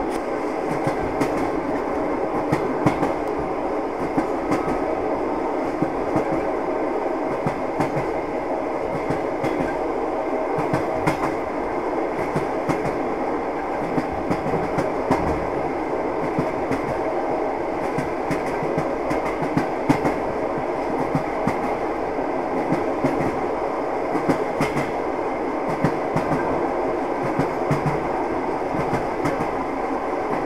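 A passenger train running along the track: a steady rolling noise of its wheels on the rails, with scattered clicks from the track.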